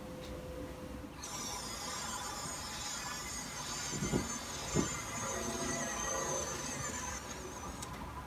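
Motorized curtain track drawing the curtains open: a high, wavering motor whine with the curtains sliding, starting about a second in and stopping near the end. Two soft thumps come in the middle.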